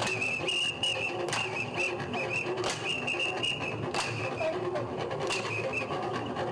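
Live sound of a traditional dance troupe: a high, warbling whistle-like tone held throughout, over sharp percussive beats about every 1.3 seconds.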